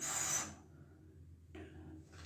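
Pen scratching on paper while writing: a short rasping stroke at the start, then fainter strokes about one and a half seconds in.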